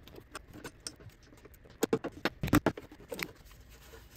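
Light metallic clicks and knocks of hands and a tool working at a car battery's terminal clamp as the battery is disconnected and removed, with a cluster of sharper knocks about two seconds in.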